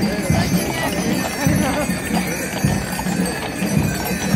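Hooves of a team of draught horses pulling a brewery wagon, clip-clopping on the asphalt street about twice a second, with the jingle of their brass harness fittings.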